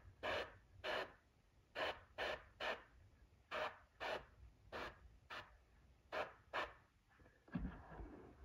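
Airbrush spraying paint in a dozen or so short hissing bursts about half a second apart, quick taps of the trigger for detail work on a small area. A brief low voice sound near the end.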